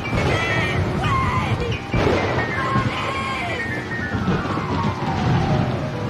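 Dramatic piano music, with a sudden crash about two seconds in. In the second half a run of notes steps downward.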